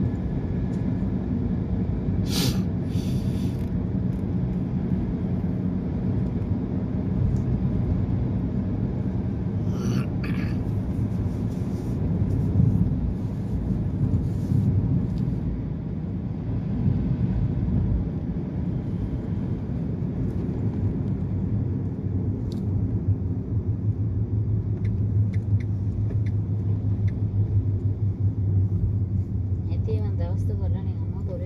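Car interior while driving: steady low engine and road rumble, with two short bursts of hiss a couple of seconds in and about ten seconds in.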